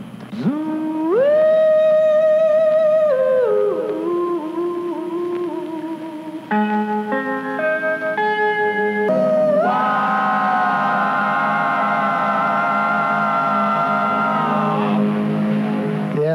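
A slow oldies ballad playing over AM radio: group voices hold long, wavering chords. The sound changes abruptly about six and a half seconds in and again near nine seconds, and the music stops shortly before the end.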